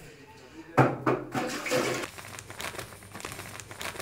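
Shower water spraying and splashing in a small tiled bathroom, a steady hiss of running water, with a few sharp sounds about a second in.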